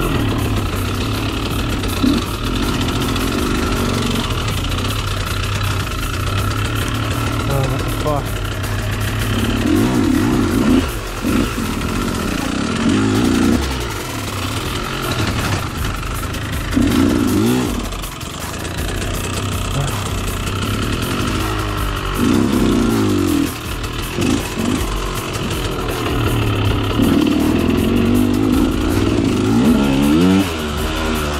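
A 2013 KTM 125 SX's single-cylinder two-stroke engine, ridden off-road, revving up in repeated bursts every few seconds as the throttle is opened and closed. Background music plays under it.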